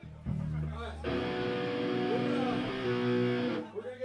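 Electric guitar through an amplifier: a low note sounds, then about a second in a chord is strummed and left to ring for about two and a half seconds before it is cut off short.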